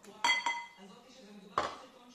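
Metal cutlery clinking against tableware during a meal: two quick ringing clinks close together near the start, then a third about a second and a half in.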